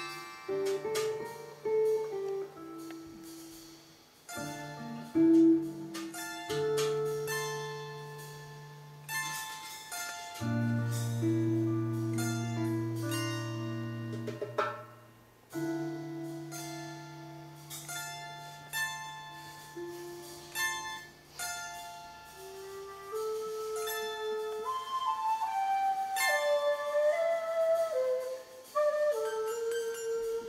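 Live acoustic ensemble music: a flute melody moving in steps over acoustic guitar and long held low notes, with scattered darbuka strokes.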